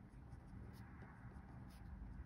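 Faint sound of a pen writing on a paper sheet.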